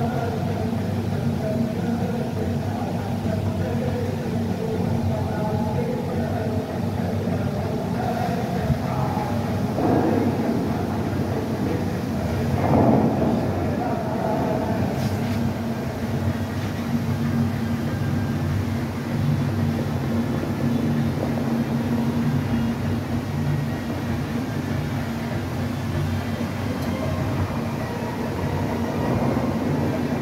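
Dubai Fountain show: a crowd of onlookers chattering over steady, sustained tones, with the rush of water jets shooting up about ten and thirteen seconds in.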